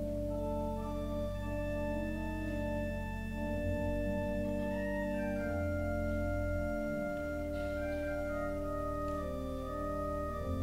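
Organ playing a slow hymn prelude: full chords held steady for several seconds at a time over a sustained bass, moving slowly from one chord to the next.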